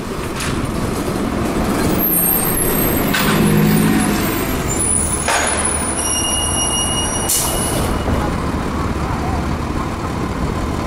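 Gillig Low Floor transit bus engine running as the bus pulls in to a stop, with a pitched engine tone around three to four seconds in. A short hiss of air from the brakes comes about five seconds in, and a high steady tone cuts off with another burst of hiss about seven seconds in.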